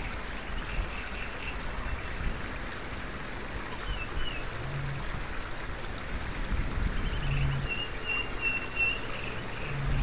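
Forest wildlife ambience: a steady outdoor noise bed with high chirping calls, the longest run about seven to nine seconds in. Short low calls come three times, about five, seven and a half and ten seconds in.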